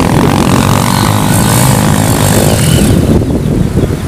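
Off-road trail motorcycle engines running under throttle on a muddy track, easing off about three seconds in.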